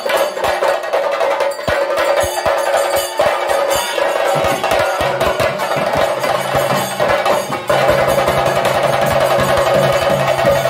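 A group of chenda drums beaten fast and hard with sticks in a dense, continuous rhythm, with a held wind-instrument tone sounding over them; the playing swells louder about three-quarters of the way through.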